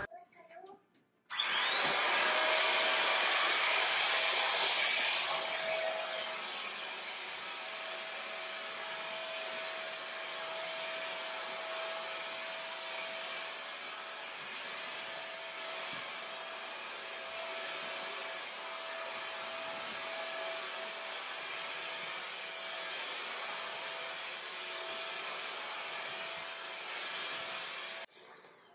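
A SoTech Cyclone corded stick vacuum cleaner switches on about a second in and runs steadily: a rushing hiss with a steady whine. It is pushed over a carpet. It is loudest for the first few seconds, then settles a little lower.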